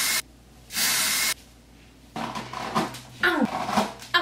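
Two short bursts of aerosol spray hissing in the first second and a half, then a woman's wordless straining, groaning vocal sounds, one sliding down in pitch, as she pulls her hair up.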